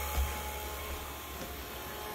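Harvest Right freeze dryer's vacuum pump running with a steady hum, drawing the chamber down toward deep vacuum for a vacuum-leak test.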